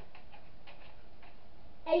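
Faint ticking, about two to three ticks a second.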